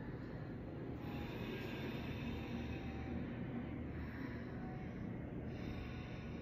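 Ujjayi pranayama breathing: slow, drawn-out breaths in and out through the nose with the throat muscles constricted, making a steady hushing, airy sound like fogging up a mirror with the mouth closed.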